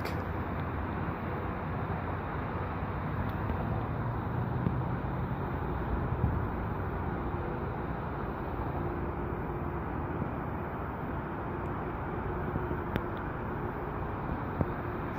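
Steady outdoor city background noise: a low, even rumble with a faint hum, as picked up by a phone's microphone.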